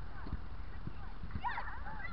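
Children's high-pitched shouts and calls, distant and brief, clustering near the end, over a steady low rumble with a few soft thumps.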